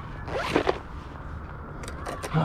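Zipper on a small fabric tackle bag pulled once, a quick zip of about half a second.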